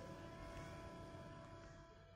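Near silence: a faint hiss with a few thin steady tones, fading away near the end.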